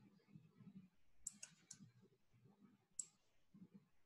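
Near silence broken by a few faint computer mouse clicks: a quick group of about three a little over a second in, then single clicks near two and three seconds.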